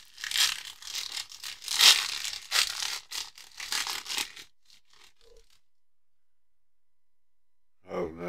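Foil trading-card pack wrapper being torn open and crinkled by hand, an uneven run of crackling and rustling that is loudest about two seconds in and stops about four and a half seconds in.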